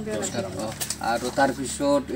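A bird cooing in several short calls, with low speech under it.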